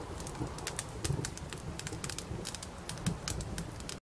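Faint, irregular crackle and clicks over a low rumble: the quiet tail of a hip-hop beat after the music has faded out.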